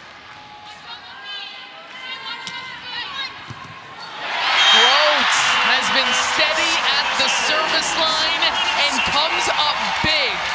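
Arena crowd at a volleyball match: a low murmur, then a sudden loud eruption of cheering and shouting about four seconds in that carries on to the end. It greets a home-team service ace that wins the point.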